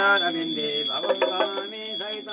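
A small hand bell rung steadily, several strokes a second, giving a continuous high ring over a voice chanting a Hindu devotional hymn.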